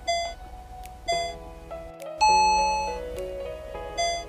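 Countdown timer chimes over background music: short bell-like dings about once a second, then a longer, louder chime a little past two seconds in that marks the end of the stretch. The dings start again near the end as the next countdown begins.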